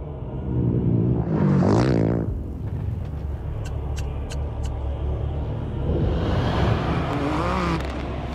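Rally engines revving over a steady low rumble: one loud rev rising and falling about a second and a half in, and another, wavering in pitch, near the end. A few sharp clicks fall in between.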